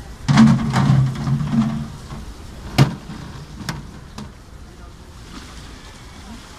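A man's voice for about a second and a half near the start, then a sharp knock of plastic containers being handled about three seconds in, with a lighter knock about a second later.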